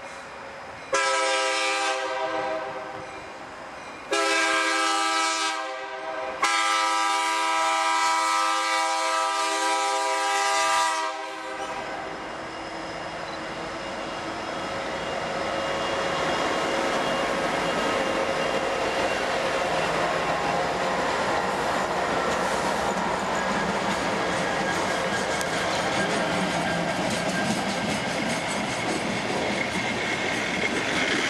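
A Kansas City Southern EMD SD70MAC diesel locomotive sounds its multi-chime air horn in three blasts for a grade crossing, the last one long. Then the lead and trailing diesel locomotives and the rail wheels pass close by in a steady, building rumble with clickety-clack.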